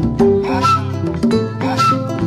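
Live Mandingue ensemble music: a kora's plucked notes over hand drums. A short high sliding note comes back about once a second.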